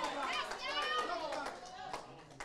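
Faint voices of people in the room, some high-pitched, fading out near the end.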